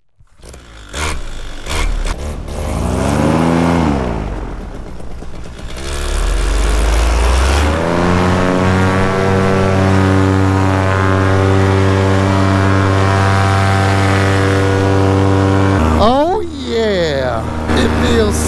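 Paramotor engine and propeller at launch. The throttle is blipped up and back down a few seconds in. From about six seconds in the engine opens up, its pitch rising to run steadily at full power for the takeoff run and climb. Near the end the sound cuts and a voice is heard over a lower engine sound.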